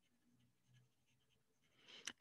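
Very faint scratching of a colored pencil shaded in quick back-and-forth strokes on paper.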